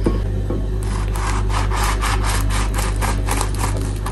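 A knife sawing through a toasted bagel sandwich in quick back-and-forth strokes, the crust rasping under the blade, starting about a second in.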